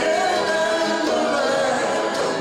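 Live folk song: a man singing long, drawn-out notes with acoustic guitar and hand drum, with more than one voice blending like a choir.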